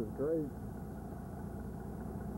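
Grapple truck's engine running steadily while the knuckleboom grapple works, preceded by a brief voice in the first half-second.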